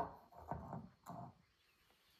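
A rock set down and shifted on a lamp-lit stone pedestal: a light knock at the start, then a few soft handling scrapes and rubs over the next second.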